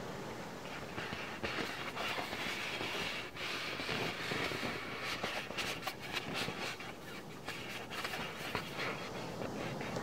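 Hands scratching and rubbing over the surface of an inflated beach ball close to the microphone: a continuous scratchy rustle dotted with many small quick clicks.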